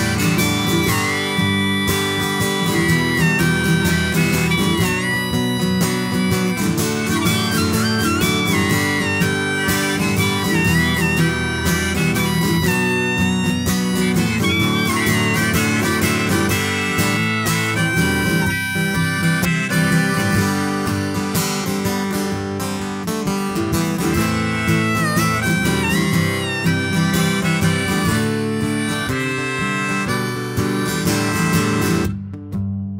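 Harmonica solo played from a neck rack over a strummed acoustic guitar, its notes bending up and down in pitch.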